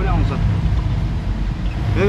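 Steady low rumble of a moving car's engine and tyres on wet tarmac, heard from inside the vehicle.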